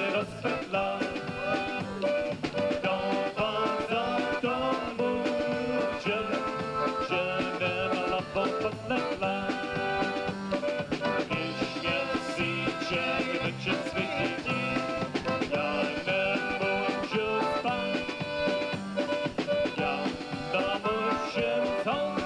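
Live band music with a steady dance beat, played by an old-time dance band that includes an electric guitar.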